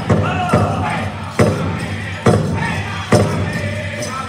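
Powwow drum group singing a men's traditional song, the big drum struck in steady beats a little under a second apart beneath the singers' voices sliding downward in pitch.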